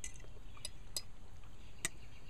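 A few faint, scattered clinks of an eating utensil against a dish, four light ticks in two seconds, over a low steady background rumble.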